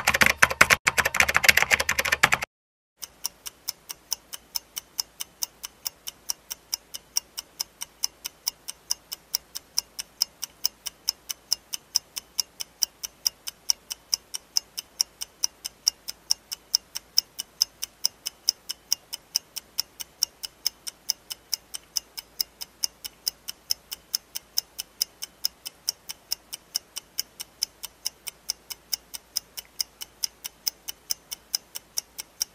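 A clock-ticking effect, sharp even ticks at about three a second, used as an answer timer. It follows a loud two-and-a-half-second burst of sound at the very start.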